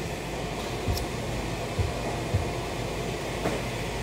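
Steady room hum and background noise with no speech, broken by a few soft low thumps about a second, a second and three quarters, and two and a half seconds in.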